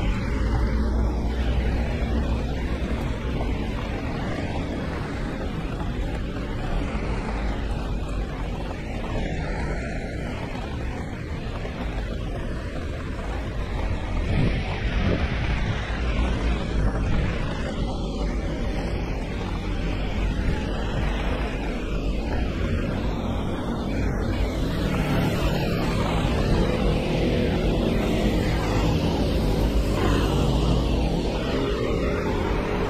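Steady rain and traffic on a wet city street: a constant hiss of rain and tyres on wet road over a low rumble.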